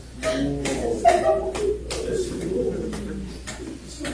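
Low, indistinct voices of people speaking quietly in a room, with no clear words.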